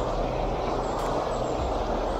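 Small mountain brook flowing, a steady, even rush of water.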